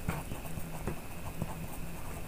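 Pencil writing on paper: faint, irregular scratches and light taps as a word is lettered by hand.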